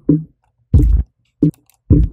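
A kick drum layer split out of a sampled drum loop, playing back on its own: four short, punchy low thumps at uneven spacing.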